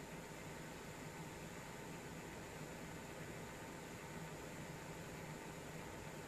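Faint, steady hiss of recording background noise with a low hum under it, unchanging throughout.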